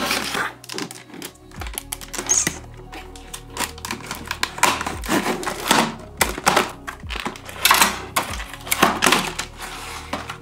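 Stiff clear plastic clamshell packaging crackling and clicking irregularly as it is handled and cut open with a kitchen knife, over background music with a stepping bass line.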